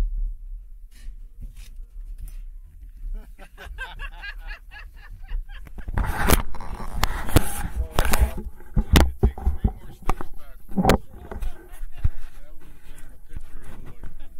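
Handling noise from a camera being moved and rubbed against a padded vinyl boat seat: a run of knocks, bumps and scrapes on the microphone, loudest in the middle, over a low rumble, with voices heard at times.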